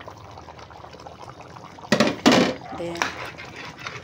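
Chicken afritada in coconut-milk sauce simmering in a metal pan. About halfway through, a metal spoon goes into the pan with a loud scrape, followed by shorter scrapes as it stirs in the freshly added chopped red chilies.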